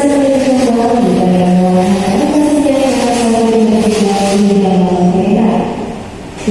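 Music: a slow melody of long, held notes that slide from one pitch to the next, drifting lower in the second half and dipping in level at the very end.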